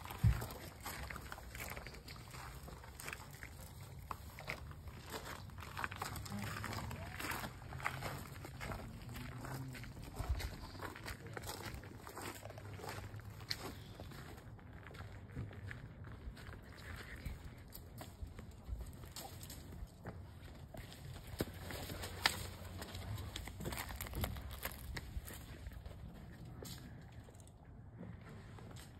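Scattered clicks and rustling from people moving about on foot, with faint voices at times under a low steady hum.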